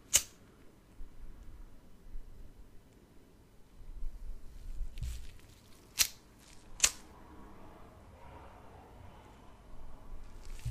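A lighter clicking three sharp times, once at the start and then twice less than a second apart about six seconds in, with faint handling noise between.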